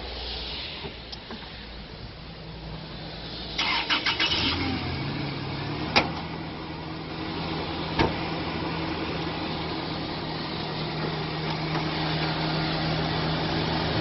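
Toyota Hilux 2.7-litre four-cylinder petrol engine being started: a brief crank of a second or so, then it catches and settles into a steady idle. Two sharp knocks sound about two seconds apart while it idles.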